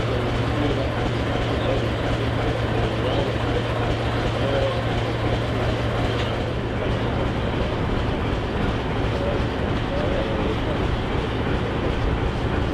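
Class 751 diesel locomotive standing with its ČKD six-cylinder diesel engine idling: a steady mechanical running sound with a constant low hum that weakens a little about halfway through.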